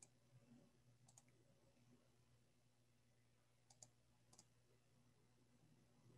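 Near silence broken by a handful of faint computer mouse clicks: one at the start, one about a second in, a quick pair near the middle and one more shortly after.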